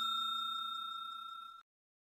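Bell-like ding sound effect ringing out and fading away, cut off about one and a half seconds in.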